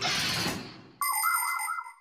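Cartoon transition sound effects: a noisy whoosh that fades away over the first second, then, starting suddenly, a short bright electronic jingle with a trilling, ringtone-like warble lasting about a second. It is the sting that introduces the explainer segment.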